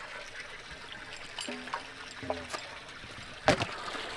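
Water trickling steadily, with a single sharp knock about three and a half seconds in.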